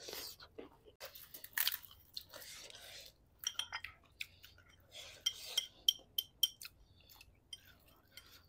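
People chewing food close to a clip-on microphone: soft crunching and wet mouth clicks and smacks, coming in quick runs between about three and a half and seven seconds in.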